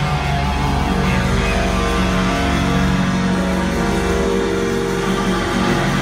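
Live rock band playing, with electric guitar to the fore over bass and drums, heard from within a large outdoor concert crowd.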